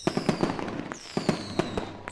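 Cartoon fireworks sound effect: a rapid run of pops and crackling bursts, with a high whistle falling in pitch about halfway through.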